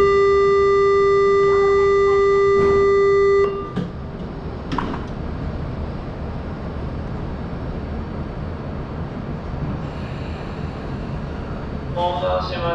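Electronic warning buzzer sounding at a Shinkansen platform: one steady, unwavering tone held for about three and a half seconds, then cutting off. A low steady rumble of the stationary train and station carries on, with a few faint knocks.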